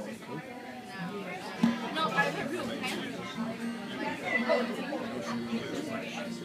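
Acoustic guitar intro played softly, a few sustained notes, under the chatter of people talking nearby.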